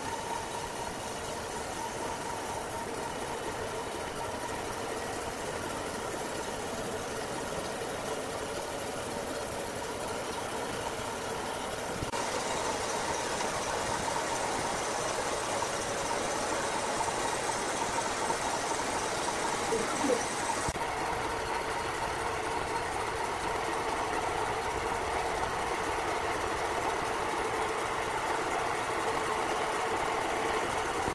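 Large electric horizontal band sawmill running and cutting through a big log: a steady machine drone with a hum, stepping up louder and hissier about twelve seconds in.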